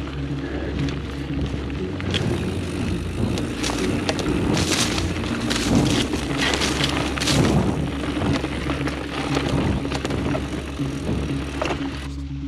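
Mountain bike rolling down a dirt singletrack: tyre noise on the trail with clusters of rattles and knocks over rough ground, busiest in the middle. Background music with steady held tones plays underneath.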